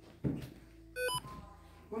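A quick electronic chirp of a few short, stepped tones from a handheld electronic device, about halfway through, after a couple of soft thumps on the wooden floor.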